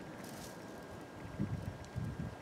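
Quiet outdoor night ambience: a low, even background hum and hiss. A faint, brief rustle or murmur comes about one and a half seconds in.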